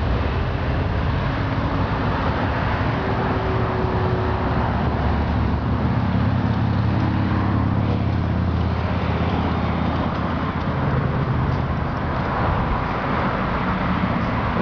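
Steady road traffic noise with a low rumble, running throughout.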